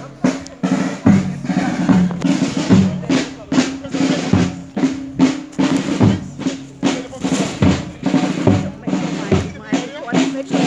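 A marching band's drum section, snare and bass drums, beating a steady marching rhythm for a funeral procession march.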